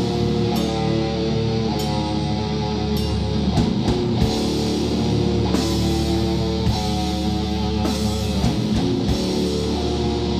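Live heavy metal band playing an instrumental passage: electric guitars holding chords over bass and drum kit, with cymbal hits about every second or two.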